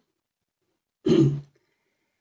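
A man's single brief vocal sound, about half a second long, falling in pitch, about a second in, set between stretches of dead silence.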